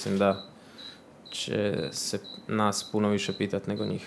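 A man speaking into a microphone, in three stretches with a short pause after the first.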